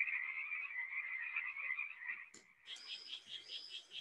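Frogs calling: a fairly faint rapid pulsing call that stops a little over two seconds in. After a click, a higher, rhythmically pulsing call takes over.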